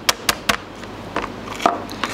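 Toothed chokka hammer lightly tapping the hard shell of a swimming crab on a plastic cutting board, cracking it: three quick, sharp taps in the first half second, then a few softer knocks.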